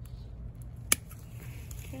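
A single sharp snip, about a second in, of hand pruning shears closing through a triangle cactus stem at a node.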